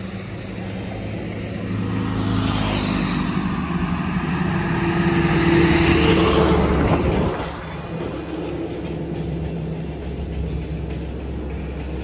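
A heavy truck passing close by on the highway, its sound swelling and then falling away over about five seconds and cutting off suddenly, over a steady low traffic hum.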